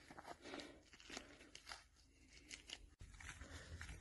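Near silence with faint, scattered rustles and crunches from the fabric sleeve of a UR-77 mine-clearing line charge being handled and pulled open, and one brief sharp click about three seconds in.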